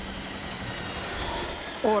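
A steady, even background hiss with a faint low hum, with no distinct events, held through a dramatic pause; a short spoken word begins right at the end.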